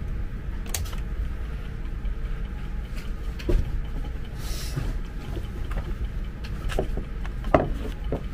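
Occasional light clicks and knocks of small parts being handled on a workbench, the two loudest about three and a half and seven and a half seconds in, with a short hiss near the middle, over a steady low rumble.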